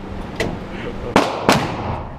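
Gunshots in an indoor shooting range, from a .50 AE revolver among them. A fainter report comes about half a second in, then two sharp, loud reports a third of a second apart a little past a second in, each ringing briefly off the range walls.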